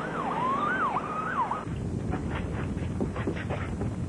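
Ambulance siren sweeping rapidly up and down in pitch, cut off suddenly less than two seconds in, followed by a low rumbling noise.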